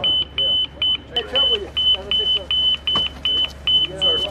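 An electronic beeper sounding a high-pitched beep about four times a second, in an uneven run of short and longer beeps, with voices over it.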